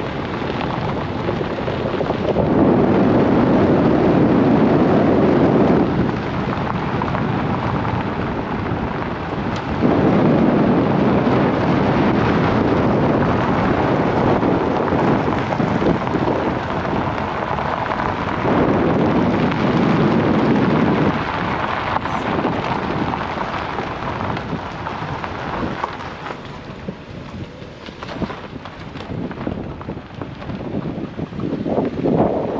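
Wind buffeting the microphone of a moving car, with tyre noise from a gravel road; the rumble swells in three strong gusts of a few seconds each and eases off near the end.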